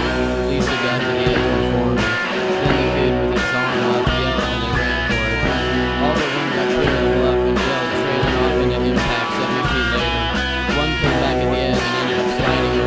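Post-punk noise-rock band recording, guitar-driven, with electric guitars over a low bass line that drops out briefly about every second and a half.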